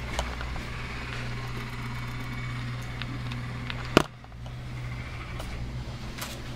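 A steady low hum with a few faint clicks and one sharp knock about four seconds in.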